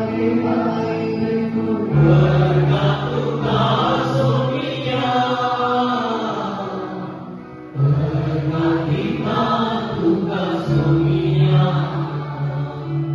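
Taizé chant: slow, repetitive sung prayer in voices over sustained keyboard chords, the chord changing every few seconds with a brief dip in level just before the eighth second.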